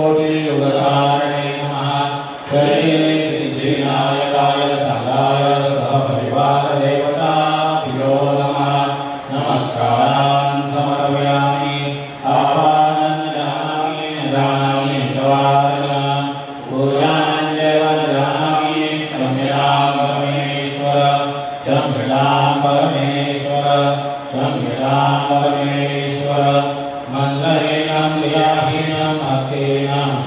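Hindu devotional chanting: a voice sings a melodic mantra in long gliding phrases over a steady low drone.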